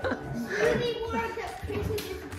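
A child's voice, talking or vocalizing without clear words.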